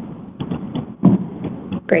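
Telephone conference line in a short gap between speakers: low line hiss, a brief voice sound about a second in, then a man saying "Great" just before the end.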